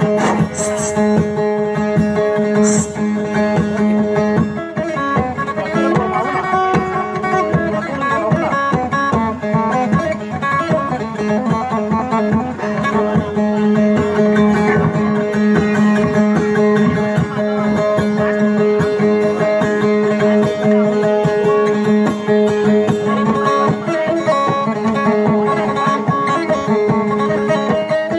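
Kutiyapi, the Maranao two-stringed boat lute, played in a fast, unbroken stream of plucked notes over a steady held drone.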